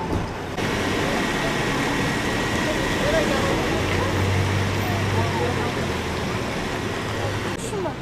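Vehicle engines idling with a low steady hum over street noise, with indistinct voices in the background. The sound changes abruptly about half a second in and again near the end.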